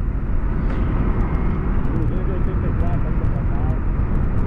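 Yamaha MT-03 motorcycle riding at highway speed: a steady, loud rush of wind on the microphone over the engine and road noise.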